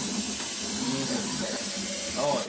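Aerosol cleaner spray can sprayed in one continuous burst onto the engine's intake surfaces, a steady hiss at an even level.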